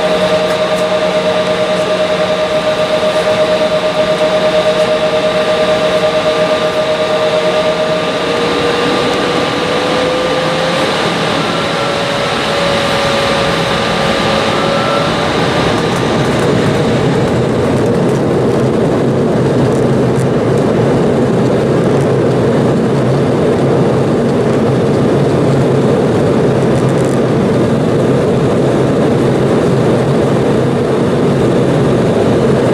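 Cabin noise of an Embraer 170 airliner with its GE CF34 turbofans running as it moves onto the runway for takeoff: a steady engine whine with two held tones that waver, slide slightly up and fade out about halfway through, after which a broader, louder engine rumble builds.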